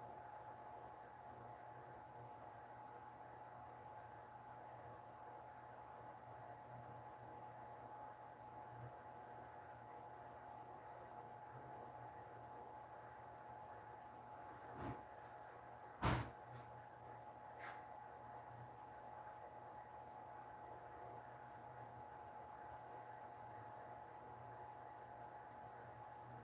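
Faint room tone with a steady low hum, broken about halfway through by three short knocks, the middle one the loudest.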